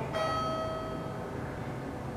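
A station PA chime: a single bell-like tone sounds just after the start and fades away over about a second and a half, over a low steady hum.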